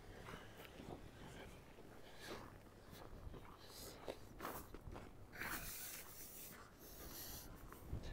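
Faint footsteps on a snow-covered sidewalk, about two steps a second, with a brief hiss a little past halfway.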